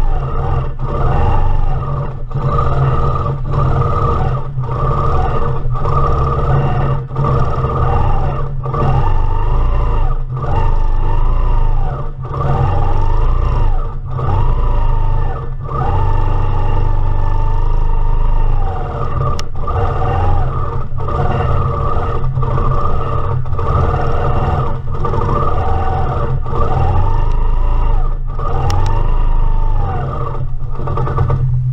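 Longarm quilting machine stitching through a quilt, its motor humming with a whine that rises and falls in pitch about once a second, with brief dips between, as the needle head is swept through curved border motifs.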